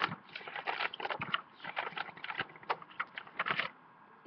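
Pages of a paperback book being leafed through by hand: a quick, irregular run of paper rustles and flicks.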